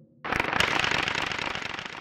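A sudden burst of dense, rapid crackling, many small pops running together, starting a fraction of a second in and slowly fading away.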